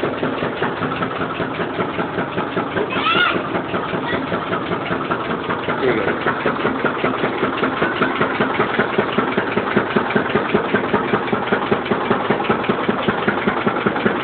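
Motor-driven sugarcane juice crusher running steadily with a fast, even beat while sugarcane stalks are fed through its rollers.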